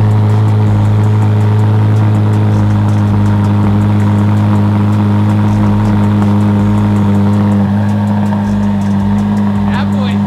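Chevrolet Corvette C8 Z06's naturally aspirated 5.5-litre flat-plane-crank V8 idling steadily through its quad centre exhaust, a low, even drone that eases slightly about eight seconds in.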